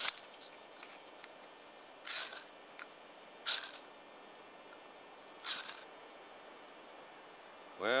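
Ferro rod scraped with its steel striker: a sharp strike at the start, then three short scrapes about one and a half to two seconds apart. The repeated strikes throw sparks onto old man's beard lichen that is still too damp to catch.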